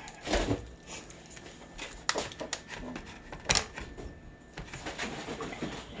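Foil wrapper crinkling and crackling as it is peeled off a block of cream cheese, in scattered sharp crackles with the loudest about three and a half seconds in.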